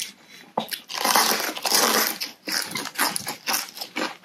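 A woman huffing and panting through her mouth to cool it from scalding-hot, spicy noodles, with one long, loud breathy exhale about a second in, followed by quick close-up mouth clicks.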